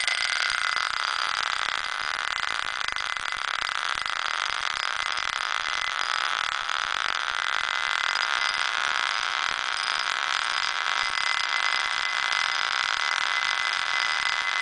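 Steel ball spinning round inside a small glass bowl, a steady rolling whir whose pitch dips and rises slowly. The ball is coasting on its own momentum, with the drive coil's power switched off.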